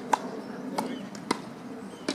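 Tennis ball impacts during a doubles rally, the ball popping off rackets and the court: three sharp pops about half a second apart, the first the loudest.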